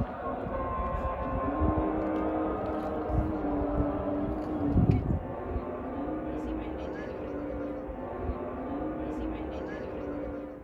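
A voice singing or chanting long, held notes that bend slowly in pitch, a phrase every couple of seconds, over a low, uneven rumble like wind on the microphone. A heavier knock comes about halfway through.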